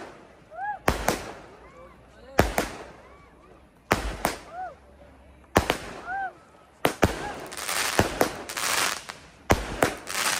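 Firework cake firing single shots about every second and a half, each a sharp bang followed by a short rising-and-falling tone. In the last few seconds the shots come closer together with a dense crackling hiss between them.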